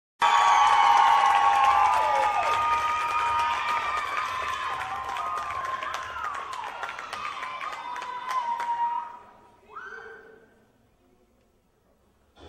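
Audience cheering and clapping, full of high-pitched shouts and screams, starting loud and dying away over about nine seconds; one last short shout near ten seconds, then near silence.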